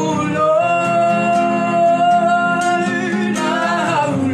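A woman singing a gospel worship song to a strummed nylon-string classical guitar. About half a second in she holds one long note, then slides into the next phrase near the end.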